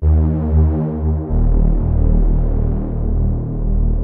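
Detuned multi-voice sawtooth drone bass from the Alchemy synthesizer, heavily low-pass filtered and soaked in reverb. It sustains with a throbbing beat from the detuned voices, and its pitch shifts lower a little over a second in.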